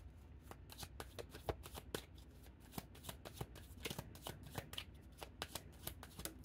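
Tarot deck being shuffled by hand: a faint, irregular run of quick card snaps and flicks.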